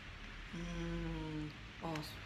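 A woman's closed-mouth hum, one steady 'mmm' about a second long, made while she chews a sweet and ponders its flavour, with a brief second vocal sound near the end.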